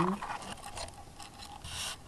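Faint rustling and scratching of close handling right at the microphone, with a short rustle near the end.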